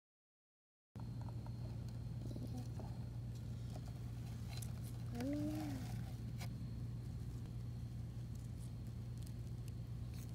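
Faint steady low hum with light rustling and crackle, starting about a second in after dead silence. A short rising-and-falling voice-like hum sounds about halfway through.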